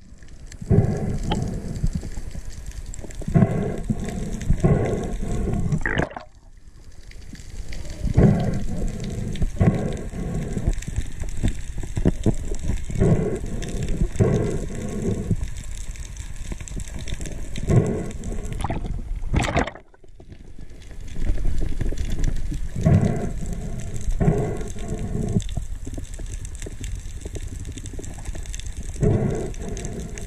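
Muffled underwater noise through an action camera's waterproof housing: a steady water rush with low bursts every few seconds as the speared fish, the spear line and the camera are handled. The sound drops away briefly twice.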